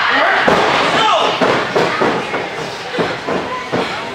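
Professional wrestler's strikes landing on his opponent in the ring: a run of about seven sharp slaps and thuds, with shouting voices at the start.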